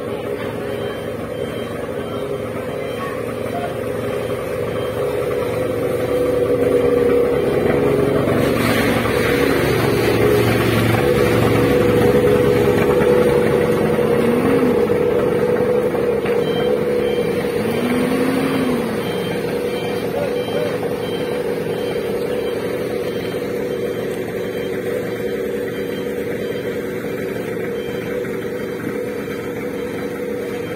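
Fire truck engine running steadily, a continuous even hum, while a hose fed from the truck is in use. It grows louder toward the middle and then eases off.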